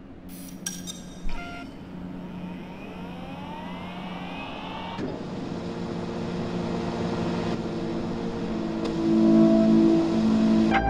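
Cinematic sound design for a robotic machine. A few mechanical clicks come near the start, then rising whirring sweeps and a hit about five seconds in. Layered steady tones then build and swell louder toward the end.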